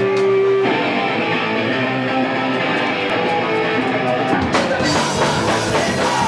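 Live rock band playing: electric guitars picking a riff over drums, with the bass and heavier drumming with cymbal hits coming in about four and a half seconds in.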